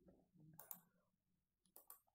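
Faint computer mouse clicks over near silence, a couple of them about a second apart, as text is selected and right-clicked to copy it.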